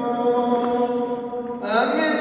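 A male voice chanting a prayer on a long held note, moving up to a new pitch near the end, echoing in a large underground stone cistern.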